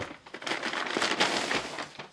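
Kraft-paper mailer bag crinkling and rustling as it is handled and opened, starting about half a second in as a dense run of paper crackles.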